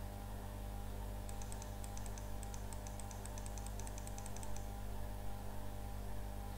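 A quick run of light clicks from a computer keyboard or mouse wheel, about eight a second, starting a little over a second in and stopping near four and a half seconds, over a steady low electrical hum.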